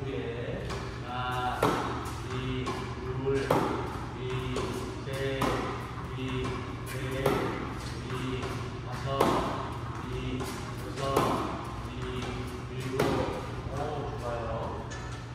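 Tennis racket striking a ball about every two seconds, seven sharp hits in a row during a fed drill.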